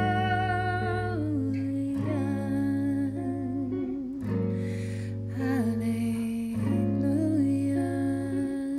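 A woman singing slow, long held notes with vibrato, accompanied by a clean electric guitar playing chords that change about every two seconds.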